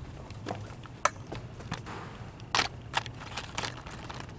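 Footsteps of several people on a hard floor: irregular clicks, the loudest about two and a half seconds in.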